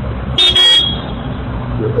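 A brief, high-pitched toot about half a second in, over a steady low hum in the background of a recorded phone call; a faint voice starts near the end.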